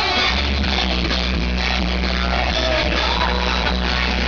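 Live pop band music played loudly through a concert PA, with a steady deep bass line under the full band.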